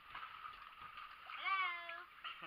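Water moving around floating swimmers, then about one and a half seconds in a person's voice gives a drawn-out call of about half a second.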